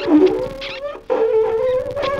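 Free improvisation on saxophone and electric guitar run through effects pedals: a wavering, howl-like tone slides down in pitch and fades out, breaks off about a second in, and a new held tone starts right after.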